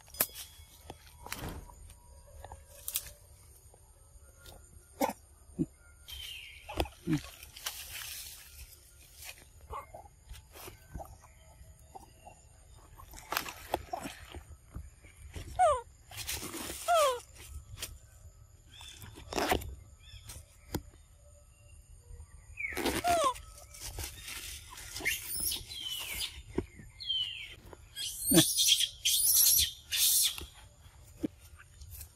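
Macaques moving and feeding among leaf litter and rocks: scattered clicks and rustles, with a handful of short squeaky calls that slide down in pitch, mostly in the second half. Near the end comes a louder stretch of rustling and scuffling.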